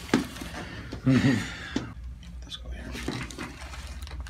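A sharp click right at the start, then a person's short laugh about a second in, followed by a few faint handling clicks.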